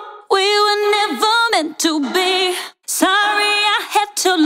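Solo sung vocal line in three short phrases with vibrato, played back through a plugin reverb that is modulated on and off so that only some notes get a reverb swell, its fade smoothed rather than cut abruptly.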